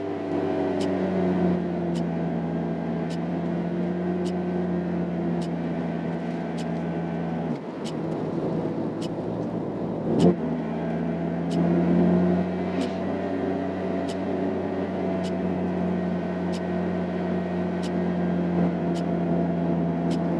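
Nissan Vanette van's engine pulling under heavy throttle, a steady drone heard from inside the cab, with light ticks through it. About seven and a half seconds in the engine note drops away for a couple of seconds. A sharp knock follows and the steady drone returns.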